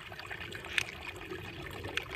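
Small runoff creek trickling steadily over rocks, with a brief click about a second in.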